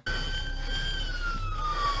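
Police car siren in a slow wail, its pitch falling steadily, over a low steady rumble.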